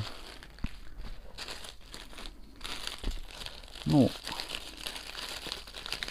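Grey plastic courier mailer bags crinkling and rustling as they are handled and pulled open, with a few sharp crackles.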